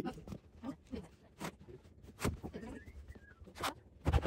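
Handling noise from a fabric-covered chair seat board being turned and smoothed on a wooden floor: soft fabric rustling and three sharp knocks as the board is set down and shifted.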